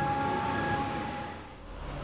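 Held chord of a dramatic background score over a low drone, fading away in the second half.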